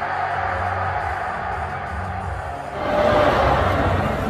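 Live pop concert music in a stadium, heard from among the audience with crowd noise mixed in. It gets louder about three seconds in.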